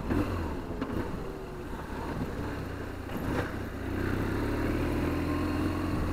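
BMW R1200GSA's boxer-twin engine running at low speed, heard from the rider's seat. The engine note grows steadier and a little louder about four seconds in.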